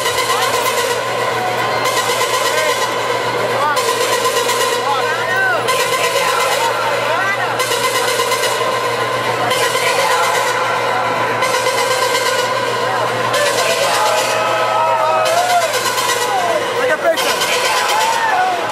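Loud crowd of clubgoers talking and calling out over dance music from the club's sound system, with held tones and a regular pulse in the music beneath the voices.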